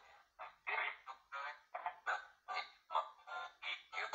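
Spirit box app sweeping, playing short chopped snippets of radio-like voice and music, about three bursts a second with brief silent gaps between.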